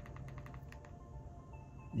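Faint rapid clicking of TV remote buttons as the volume is pressed up, followed by a few faint, short electronic tones at different pitches.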